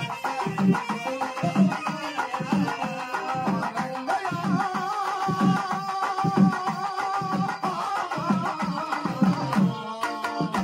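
Dolu barrel drums beating a steady rhythm of deep strokes, with a held keyboard melody running over them in the middle of the stretch.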